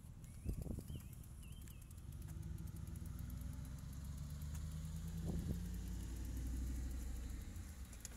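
A motor vehicle's engine running on the street, a low hum that builds from about two seconds in and drops away just before the end. A few short bird chirps sound in the first two seconds.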